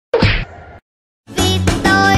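A short, sharp whack sound effect that dies away within about a second, then a brief silence, then music starts about a second and a half in.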